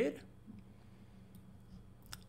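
Quiet room tone with a low steady hum, broken by a few faint computer-mouse clicks as the notebook page is scrolled.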